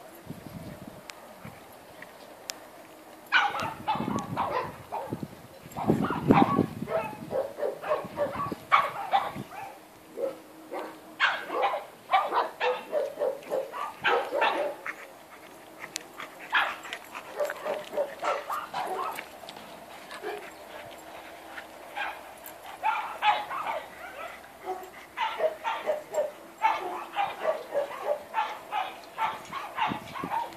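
Dogs barking and yipping during rough play, in repeated clusters of short calls with pauses between them.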